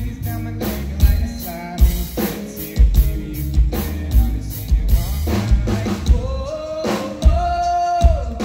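A country-pop song performed live: a male voice singing over a drum kit with kick and snare, holding one long note near the end.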